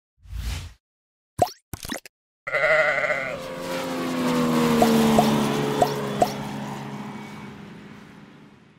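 Animated logo sting. A short low thump and a few quick whooshes, then a sheep's bleat about two and a half seconds in, running into a held musical chord with four light pings. The chord fades out near the end.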